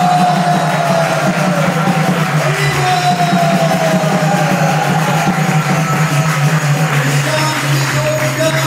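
Devotional kirtan music: voices singing long, slowly gliding notes over a steady low drone, with light jingling percussion.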